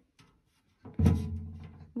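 A single deep bass note struck about a second in and fading away over the next second, like a musical sound effect.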